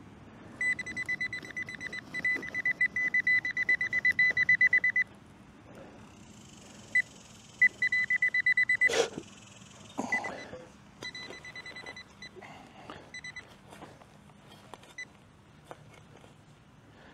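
Handheld metal-detecting pinpointer beeping in rapid, high-pitched pulses as it is probed into a dug hole, a fast beep rate that marks a metal target close to its tip. The beeping comes in three spells, the last one fainter, with a sharp knock about nine seconds in.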